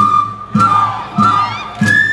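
Andean folk dance music: a drum beats about every 0.6 s while the flute melody drops out and voices yell in the middle, then the flute comes back with a high held note near the end.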